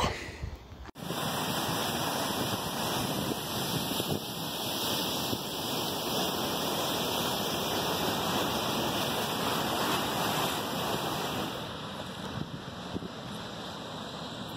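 Steady rush of water released from a dam's outlet, flowing fast and choppy down the river channel below. It starts abruptly about a second in and eases slightly near the end.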